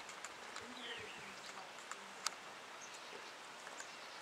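Faint outdoor ambience: a low background hiss with a few faint, short bird chirps and one sharp click a little after two seconds in.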